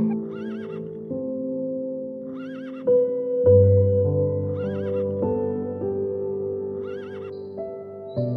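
Background music of sustained chords, over which a short horse whinny repeats four times, evenly spaced about two seconds apart.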